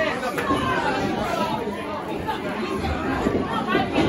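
Indistinct talking and calling out from spectators at ringside.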